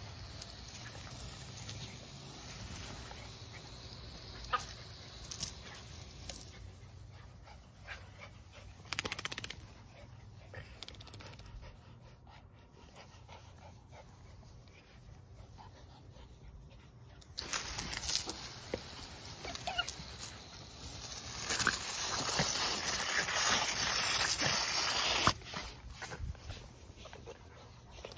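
Toy Manchester Terriers vocalizing while they play, with the hiss of water spraying from a garden hose. The spray is loudest in two spells in the second half, the longer one lasting about four seconds and cutting off suddenly.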